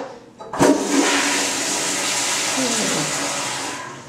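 Tank toilet flushed: a click of the handle about half a second in, then a loud rush of water for about three seconds that begins to fade near the end.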